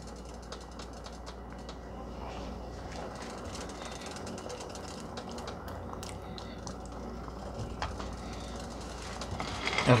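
Rice and broth simmering in a large pan on the stove, a steady bubbling with many small pops, over a low steady hum.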